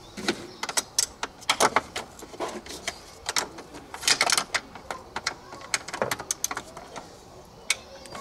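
Large socket ratchet clicking in short irregular runs, with scattered metallic knocks of the tool, as engine bolts are loosened and backed out.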